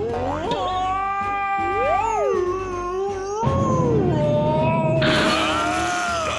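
Cartoon animal characters wailing in long, held, yowling notes that slide up and down, cat-like caterwauling sung as a deliberately awful 'song'. About halfway through a deeper rumble joins, and near the end a harsh noisy burst.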